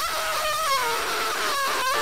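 A man vocally imitating the wind of a waterspout: one high, wavering "whooo" held through the whole two seconds, drifting slowly down in pitch.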